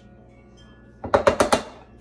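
A kitchen knife cutting cubes off a stick of butter, the blade striking the dish beneath in a quick cluster of sharp clicks about a second in, lasting about half a second.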